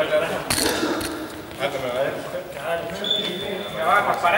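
Indistinct voices of a group of people talking in a sports hall, with a sharp click about half a second in and a thin, steady high tone lasting about a second near the end.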